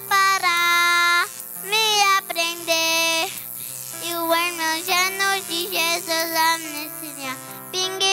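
A young girl singing a children's song into a handheld microphone, with held and gliding notes. Sustained low accompaniment notes play beneath her voice.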